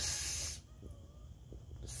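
A short hiss lasting about half a second, then a quiet room.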